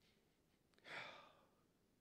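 A man's single audible breath, a sigh-like exhale picked up close by a headset microphone, about a second in; otherwise near silence.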